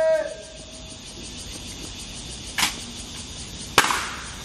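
A long drawn-out shouted drill command cuts off just after the start. Near the end come two sharp knocks about a second apart, the second louder, from the honor guards' rifle drill movements.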